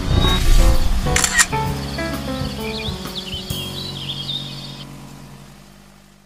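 A short music jingle with sound effects for a channel's logo outro. It starts suddenly, has a few quick notes and clicks early on, and its held notes die away over the last few seconds.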